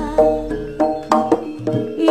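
Live Javanese gamelan-style folk music: sharp hand-drum strokes, about five in two seconds, over held pitched notes.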